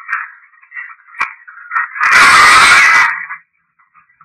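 A handheld Panasonic IC voice recorder playing back a séance (EVP) recording through its small speaker: thin, tinny, garbled sound with a few sharp clicks. About two seconds in comes a loud, harsh burst of noise lasting about a second.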